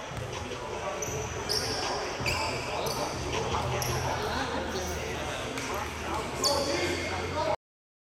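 Echoing gym ambience of players' and spectators' voices, with a basketball bouncing on the hardwood court and a few short, high-pitched squeaks. The sound cuts off suddenly near the end.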